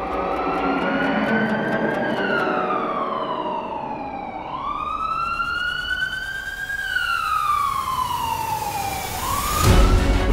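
Emergency siren wailing, its pitch sweeping slowly up and down over a few seconds per cycle, as of an ambulance carrying a gunshot victim. A loud swell comes just before the end.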